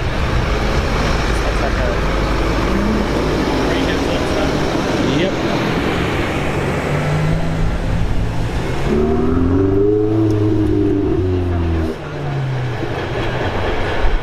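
A bus passes close by with a steady run of engine and road noise. About nine seconds in, a Ferrari 488's twin-turbo V8 rises and then falls in pitch for about three seconds as the car pulls away, and the sound cuts off suddenly.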